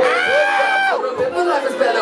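A pop song with its lead vocal, sung or rapped, over a backing track. A long held note slides in pitch in the first second.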